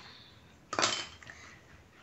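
A clear hard-plastic container put down on a hard surface: one brief clatter with a short ring, about three-quarters of a second in.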